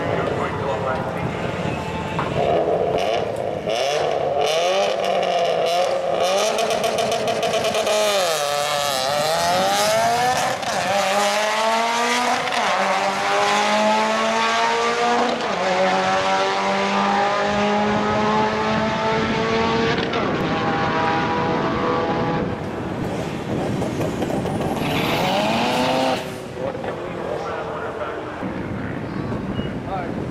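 Drag-race cars, a turbocharged Mitsubishi Lancer Evolution X GSR among them: engines held at high revs on the start line, then launching about eight seconds in and accelerating hard, the pitch climbing and falling back at each upshift several times. The sound drops off suddenly near the end.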